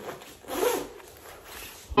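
A jacket zipper being pulled, a quick rasp loudest about half a second in, followed by fainter rubbing of clothing.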